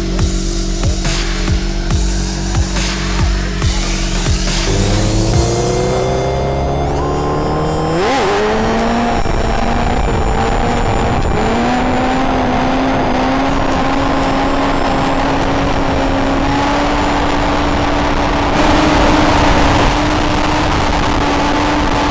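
Sport motorcycle engine pulling away: its pitch climbs for about three seconds, breaks at a gear change, then settles into a steady run at cruising speed with wind rushing past.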